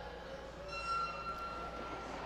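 Race start signal for a quad roller speed skating heat: one steady, high, electronic-sounding tone lasting about a second, beginning just under a second in, over low arena hum.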